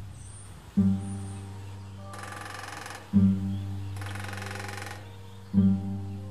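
Guitar-like background music, with slow plucked notes, over two bursts of rapid, machine-gun-like drumming by a northern flicker hammering its bill on a metal roof vent. Each drumming burst lasts about a second, the first about two seconds in and the second about four seconds in.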